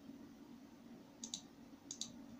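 Two faint pairs of quick computer mouse clicks, about a second in and near the end, over a low steady hum.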